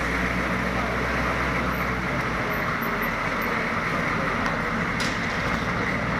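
Humvee diesel engines running as the trucks drive slowly across a metal-walled vehicle bay: a steady, even engine and road noise with a low hum.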